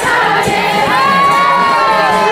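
A group of voices, many of them high, singing a kirtan chant loudly together to a steady beat; about halfway through, one voice holds a long high note.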